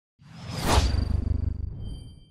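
Whoosh sound effect for an animated logo reveal: a rush that swells to a peak under a second in over a low fluttering rumble, then dies away, leaving a thin high ringing tone.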